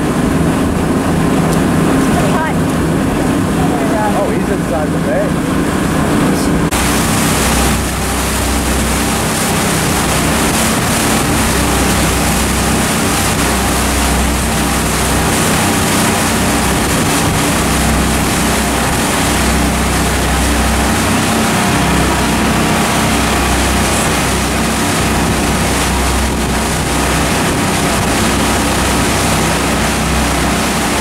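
A boat engine drones steadily for the first several seconds. After a cut about seven seconds in, wind rushes over the microphone with a gusty low rumble, mixed with the engine and water noise of the moving boat.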